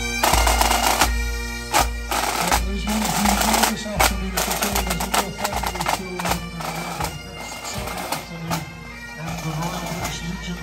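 Pipe band playing on the march: bagpipes over snare drums and a steadily beating bass drum, growing fainter in the last few seconds as the band moves away.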